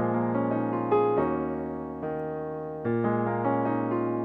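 Piano chords in B-flat minor, played with both hands: sustained jazzy seventh and eleventh chords, with a new chord struck about a second in and another near three seconds, each ringing and slowly fading.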